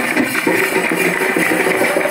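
Tappeta gullu folk drumming: small hand drums beaten in a fast, even beat with jingling bells.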